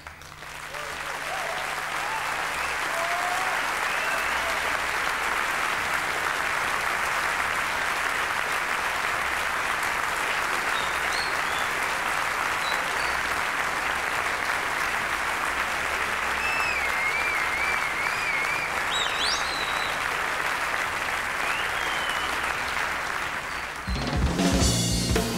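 Audience applauding, swelling over the first two seconds and then holding steady, with a few warbling whistles from the crowd above it.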